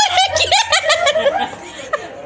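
A person laughing hard in quick, high-pitched bursts that die down after about a second and a half.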